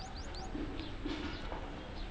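Birds calling outdoors: a quick run of high, rising chirps that stops about half a second in, then a few scattered lower calls, over a steady low rumble of background noise.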